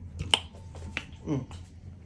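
Two sharp clicks of things being picked up and handled, the first the loudest, followed by a short, falling hummed 'mm'.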